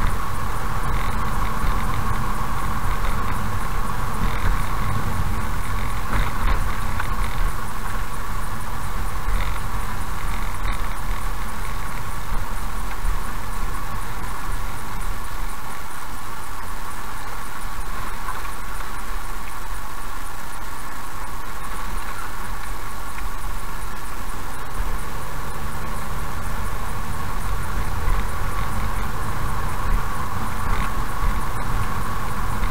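Car driving slowly, its engine and tyre noise steady as heard from inside the cabin, with a few faint clicks.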